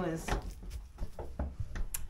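Several short clicks and knocks of a hanging plastic water bucket's wire handle and clip being worked loose from a wall hook, with some rustling.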